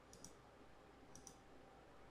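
Faint computer mouse clicks, two of them about a second apart, each heard as a quick double tick, over near-silent room tone.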